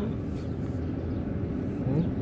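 A steady low outdoor rumble.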